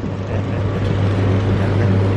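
A steady low hum under an even wash of outdoor street noise, with no distinct events.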